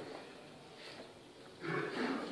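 A pause in a man's talk: faint room tone, then his voice starts again with a drawn-out sound about a second and a half in.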